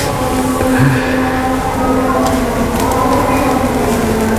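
A steady mechanical rumble with a low, even hum, like a running engine.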